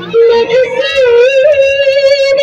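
A high female singing voice holding long, wavering notes in a song accompanying a circle dance, with a new phrase starting just after the beginning.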